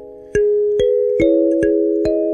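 Kalimba (thumb piano) played with the thumbs. An earlier note fades, then four notes are plucked about half a second apart, each metal tine ringing on under the next.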